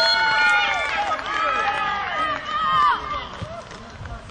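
Several high-pitched young voices shouting and cheering over one another after a goal, loudest at the start and tailing off near the end.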